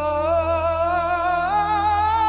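A male singer holding a long, full-voiced note that steps up in pitch about one and a half seconds in, over a low steady drone.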